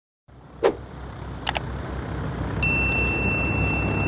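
Subscribe-button animation sound effects: a short pop, a quick double mouse click, then a bright notification-bell ding that starts past halfway and rings on. Under them is a steady low outdoor rumble that fades in at the start.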